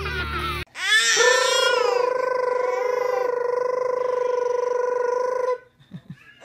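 Brief outdoor chatter that cuts off, then a single long, high-pitched vocal note that rises at its onset and is held steady for about four and a half seconds before stopping abruptly.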